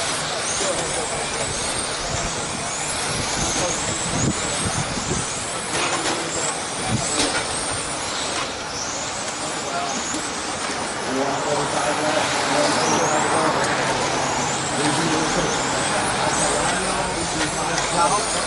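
Several electric RC touring cars with 21.5-turn brushless motors racing: many short high-pitched motor whines rise one after another as the cars accelerate, over a background of voices.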